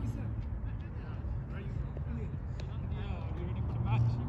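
Faint distant voices talking over a steady low background rumble.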